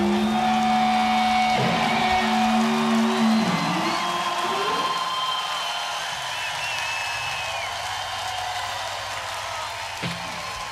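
The last notes of a live rock band's song ringing out, held guitar and bass notes with a few sliding tones, which stop a few seconds in and give way to an arena crowd cheering and whistling, slowly fading.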